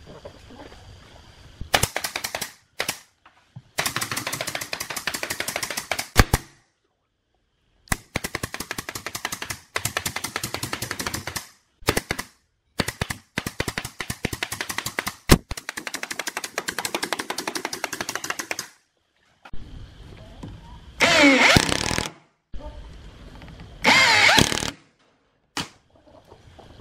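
Pneumatic nail gun firing rapid runs of nails into a plywood subwoofer cabinet panel, in several volleys separated by short pauses. Near the end, a cordless drill runs in two short bursts, its whine rising and falling.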